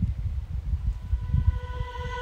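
Gusty wind rumbling on the microphone, with faint background music fading in from about halfway through.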